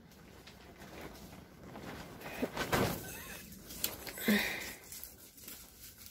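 Dry, dead yam vines and leaves rustling and crackling faintly as a bamboo cane tangled in them is worked loose and pulled out of a container of dry soil, with a few short scrapes near the middle.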